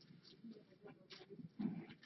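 Faint rustling and small clicks of paper and plastic packaging being handled, with a short low vocal sound near the end.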